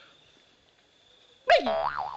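Bamboo water pipe being drawn on, starting about a second and a half in with a sudden, resonant, boing-like note whose pitch drops and then wobbles up and down.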